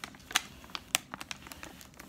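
Thin plastic water bottle crinkling in the hand as it is gripped and moved, a string of sharp crackles with two louder ones about a third of a second and about a second in.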